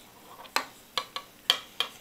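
A spoon scraping and tapping inside a small plastic cup, about five short sharp strokes in the second half.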